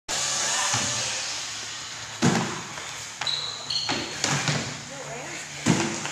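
Feet landing on wooden plyo boxes during box jumps: a few sharp thuds, the loudest about two seconds in and near the end, echoing in a large hall.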